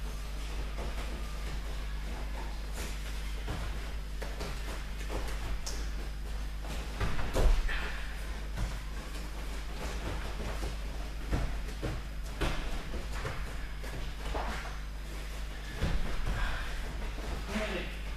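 Dull thuds of a body landing on foam judo mats during tumbling exercises, the loudest about seven and a half seconds in and another near sixteen seconds, over a steady low hum.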